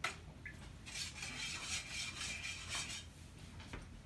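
A utensil stirring liquid sauce in a stainless steel mixing bowl, scraping and clinking against the metal, with a sharp clink at the very start.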